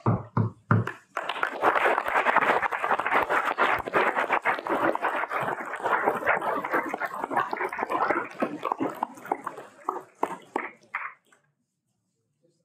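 A roomful of people applauding: a few separate claps, then steady applause from about a second in, thinning to scattered claps and stopping shortly before the end.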